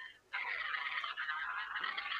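Thin, hiss-like sound of a shared video's soundtrack coming through a video call, heard only faintly. It drops out for a moment at the start, then runs steadily.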